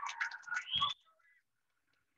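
Audience clapping and cheering that cuts off suddenly about a second in, leaving near silence.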